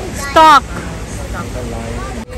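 A child's short, loud cry about half a second in, falling in pitch, over the chatter of people's voices.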